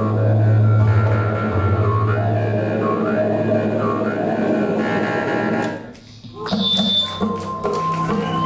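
Live band of electric guitar and electronics playing a heavy low drone, with a wavering higher tone that dips about once a second. The sound drops away briefly about six seconds in, then comes back with scattered clicks and thin steady high tones.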